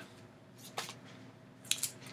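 Quiet room with two brief soft rustles of paper cross-stitch pattern leaflets being handled, one just under a second in and a short cluster near the end.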